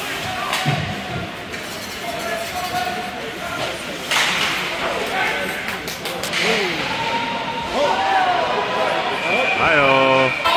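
Ice hockey play heard from rinkside behind the glass: sharp knocks of the puck and sticks against the boards, the strongest about four seconds in, over spectators' chatter echoing in the rink.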